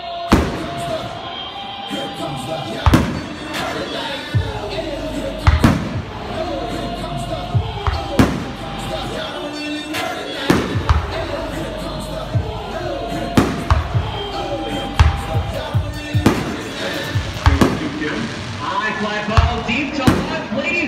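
Aerial fireworks shells bursting overhead, a sharp bang every second or so, some in quick pairs, over music and voices playing in the background.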